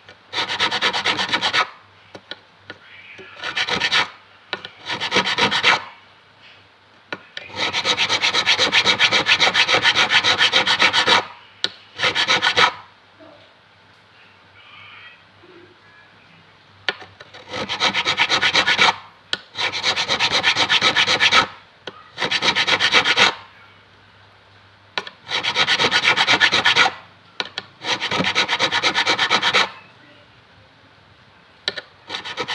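Fret crowning file rasping rapidly back and forth across a metal guitar fret, in about ten bursts of fast strokes with short pauses between them, the longest lasting about four seconds, starting about seven seconds in.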